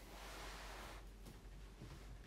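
Faint room tone: a steady low hiss with no notes played yet.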